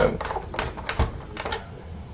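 A few short, light clicks of a hand screwdriver turning screws into the plastic housing of a Wertheim PB18 vacuum powerhead, with the screwdriver tapping against the plastic.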